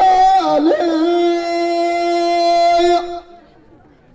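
A man's amplified voice chanting a line of Amazigh tanḍḍamt poetry into a microphone. The line ends on one long held note that stops about three seconds in.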